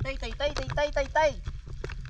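A man's voice rapidly calling "ti-ti-ti" to call an otter, about six calls a second, stopping after about a second. A few short splashes follow as a mermaid tail fin slaps the shallow water.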